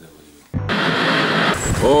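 Quiet room tone that cuts abruptly about half a second in to loud, steady street noise, with a man's voice exclaiming near the end.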